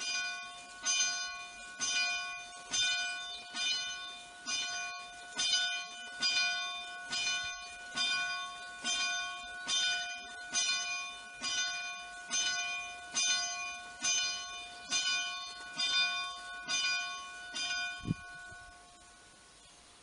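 A single church bell rung by hand from its rope, striking steadily a little less than a second apart, about twenty times. Each strike rings on into the next. The ringing stops near the end and dies away, and a dull knock comes as it stops.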